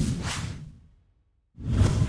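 Whoosh sound effects of a news intro sting: one sweep fading out within the first second, a short silence, then another whoosh swelling up with a low rumble near the end.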